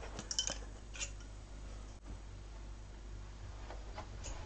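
A few light metallic clicks in the first second, steel-tip darts clinking against each other in the hand as they are gathered from the board, then faint room tone.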